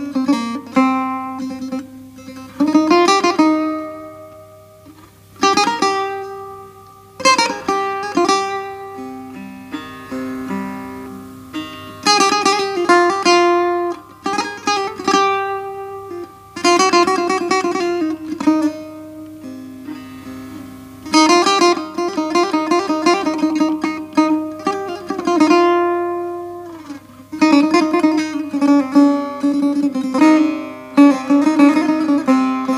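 Solo setar improvisation in the Persian mode Dashti on A, the strings plucked with the fingernail. The instrument is tuned below concert pitch to C–D–A–F, with the second string set lower than the first two. Runs of fast repeated strokes alternate with single notes left to ring out and fade.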